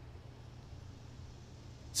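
Quiet room tone: a faint steady low hum with a soft hiss underneath.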